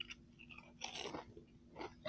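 A person biting and chewing a barbecue potato chip, faint crunches coming in short bursts about a second in and again near the end.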